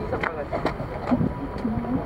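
Snatches of people talking, with a steady low rumble of wind on the microphone.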